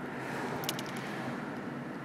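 Steady low rumble and hiss of background noise, with a couple of faint ticks a little past halfway.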